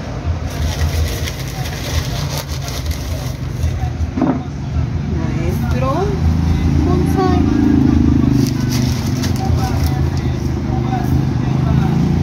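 Low, steady engine rumble of a nearby motor vehicle, growing louder after about seven seconds, with light clicks and faint voices over it.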